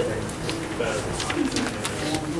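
Indistinct voices of people talking quietly, over a steady low hum.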